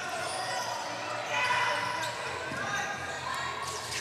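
Indoor basketball arena sound during live play: indistinct voices of players and spectators echoing in the hall over a steady background hubbub, with the sounds of the game on the court.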